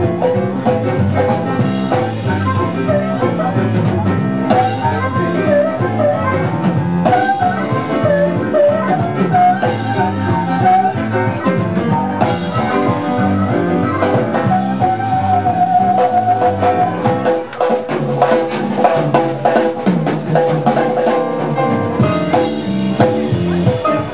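Live blues-rock band playing: drum kit, electric guitar and keyboard together at full volume. About three-quarters of the way through, the deepest bass drops away while the rest plays on.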